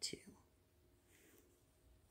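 Near silence, with a faint, brief rustle of yarn being worked on a crochet hook about a second in.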